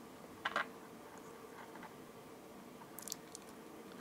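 Mostly quiet, with a few faint small clicks and ticks as chain-nose pliers squeeze a small metal jump ring closed: one short click about half a second in and a few soft ticks near the end.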